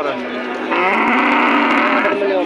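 A cow mooing: one long moo that starts low and turns loud about two-thirds of a second in, holding for over a second.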